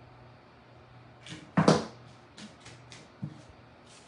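A plastic hot glue gun is set down on the craft table with a clatter about a second and a half in. Then come a few light clicks and a tap as thin plastic wall-tile pieces are handled, over a faint steady low hum.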